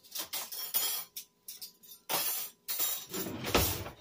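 Metal cutlery rattling and clinking in a drawer as a spoon is picked out, in several short bursts and a longer rattle in the second half.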